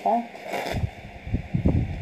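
Rustling of a tulle princess dress as it is handled and lifted, with a brief sharper rustle about half a second in and a run of dull low handling bumps near the end.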